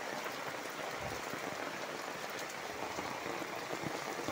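Steady wash of water noise from floodwater covering a village lane, with rain falling on it.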